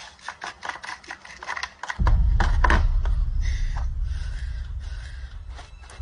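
A quick run of sharp clicks and taps, then about two seconds in a sudden deep boom that rumbles and slowly fades away.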